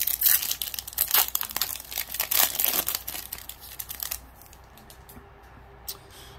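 Foil wrapper of a baseball card pack being torn open and crinkled by hand, a dense crackling that stops about four seconds in.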